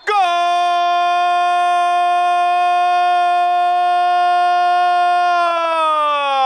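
A man's voice holding one long, loud 'goooool' cry at a steady pitch, which begins to slide down in pitch near the end: a football commentator's goal call.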